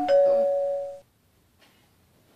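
Doorbell chiming a two-note ding-dong, a higher note followed by a lower one, ringing out for about a second.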